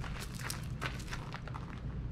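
Footsteps in flip-flops crunching on gravel, a short irregular crunch every quarter to half second, over a steady low hum.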